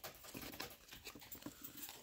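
Cardstock gift tags and ribbons rustling as they are handled and turned on a metal binder ring, with many small, quick clicks.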